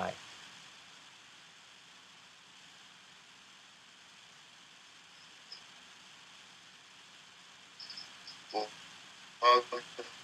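Faint steady hiss of a Skype call line while the remote speaker's voice has dropped out; near the end, a few short, broken fragments of speech come through as the call audio breaks up.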